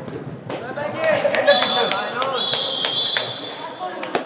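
A referee's whistle blown in one long, steady, high blast with a brief dip partway, starting about a third of the way in, over shouting voices in a large hall. Sharp knocks from the ball or players come throughout.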